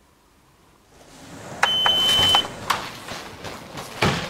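Near silence, then a rising rush of noise; midway a single electronic beep, one steady high tone lasting under a second, cuts in and off sharply, followed by scattered knocks and clatter of movement.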